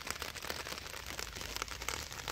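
Faint, steady crackling rustle made up of many small ticks.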